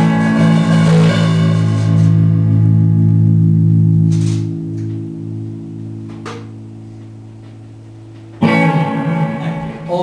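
Electric guitars and bass guitar finishing a song: after the last full strums the final chord rings on, its low notes held as it slowly fades over several seconds. About eight seconds in, a sudden loud burst breaks in.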